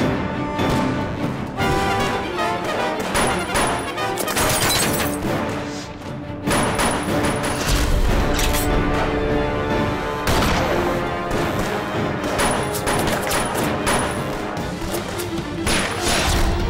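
Dramatic action film score with a steady low rumble in the second half, overlaid by repeated sharp hits and bangs such as gunshots and impacts.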